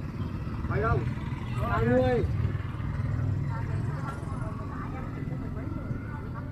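A few short, high-pitched spoken exclamations about one and two seconds in, over a steady low rumble.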